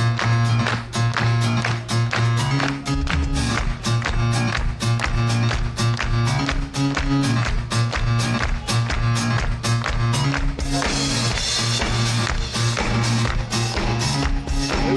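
Live band playing a soul-pop song at concert volume: a steady drumbeat over a sustained bass line, with the cymbals growing louder and brighter about ten seconds in.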